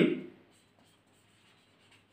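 Faint rubbing of a felt-tip marker writing on a whiteboard.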